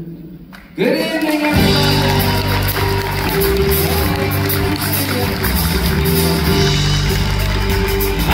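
Live pop-country band: bass, drums and keyboard come in abruptly about a second in and play a steady upbeat song intro, after a brief quieter moment.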